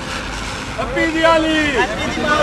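A group of men shouting and cheering in long held calls, starting about a second in, with voices overlapping.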